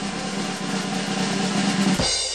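Snare drum roll sound effect, a fast continuous roll growing slightly louder and stopping at the end.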